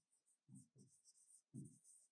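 Faint scratching of a marker pen writing on a whiteboard: a run of short strokes, with a few soft knocks of the pen against the board.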